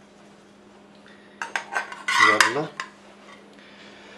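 A spatula knocking and scraping in a frying pan as an omelette is worked loose and lifted out. A quick run of clinks comes about a second and a half in, with the loudest clatter just after two seconds.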